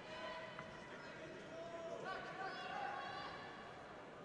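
Voices in a sports hall calling out in long, high-pitched shouts over a steady hall murmur. One call comes near the start, and a higher one rises and holds from about two seconds in.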